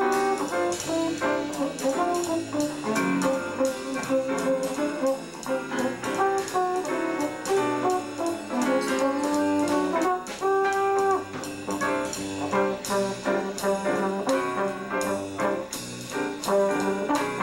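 Small jazz band playing at medium swing: trombone and trumpet lines over piano, bass and drums, with steady cymbal strokes.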